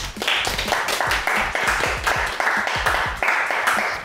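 People applauding: a dense, steady run of hand claps.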